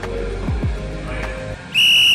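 Electronic music with deep falling bass swoops stops about one and a half seconds in. Near the end comes a single short, loud whistle blast on one steady high pitch, marking the start of play.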